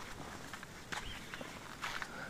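Faint footsteps on a sandy riverbank path, with two sharper steps about a second in and near the end.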